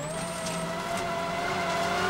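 Rally car's turbocharged four-cylinder engine pulling hard at high revs, its pitch climbing slowly and steadily, with tyre and gravel noise beneath.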